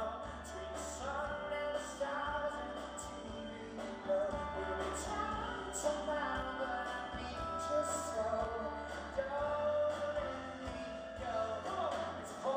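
A live song: a man singing over a grand piano, with a drum kit's cymbals keeping time.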